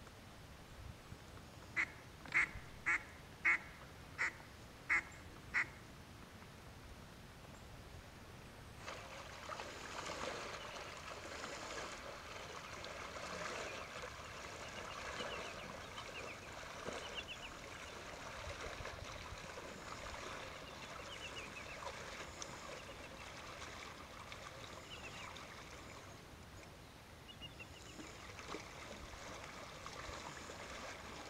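A duck quacks seven times in a quick, evenly spaced series, about half a second apart. Then, from about nine seconds in, water sloshes steadily as a person in waders wades through shallow water, with faint high chirps over it.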